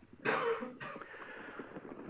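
A person coughing: one short cough about a quarter second in, followed by a fainter second one.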